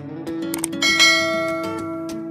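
A couple of sharp clicks, then a bright bell-ding sound effect that starts about a second in and rings away slowly, over acoustic guitar background music.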